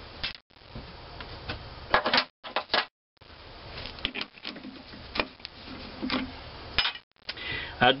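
Small metal clicks and clinks as a cast-iron valve head is handled against a steel three-jaw lathe chuck, scattered over a steady low shop hum. The sound drops out to dead silence a few times for a split second.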